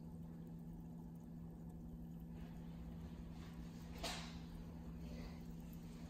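Faint room tone with a steady low hum, and one short, faint rustle about four seconds in.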